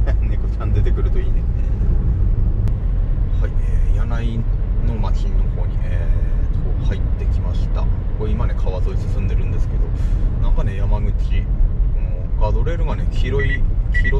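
Steady low rumble of road and engine noise inside a moving car's cabin, with quiet talking over it.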